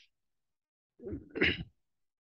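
A man makes a single short non-speech vocal sound about a second in, in two quick parts with the second louder: a throat-clear or sneeze-like burst.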